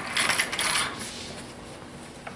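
Paper rustling as book pages are turned, loudest in the first second and then fading, with a few faint clicks.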